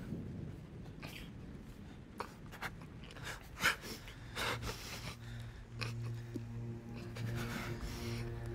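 Short, uneven breaths and sniffs of a person weeping quietly. A low, sustained note of soft film-score music comes in about halfway through and holds.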